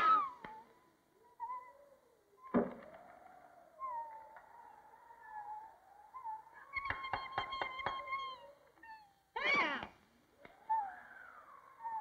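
A cartoon bird character crying in high, wavering whimpers and short falling wails, with a thump about two and a half seconds in.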